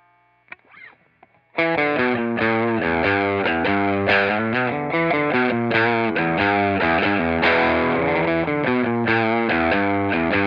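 Electric guitar, a Fender Telecaster with '52-style single-coil pickups, played through a Fender tube combo amp. After a few faint string clicks, a fast stream of notes and chords starts about a second and a half in and goes on without a break.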